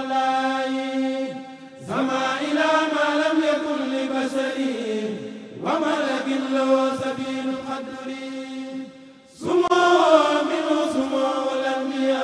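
A kurel, a group of men, chanting a Mouride khassida (sung Arabic religious poem) in unison through microphones. The voices hold long notes in phrases that break off and begin again at about two, six and nine and a half seconds in, the last entry the loudest.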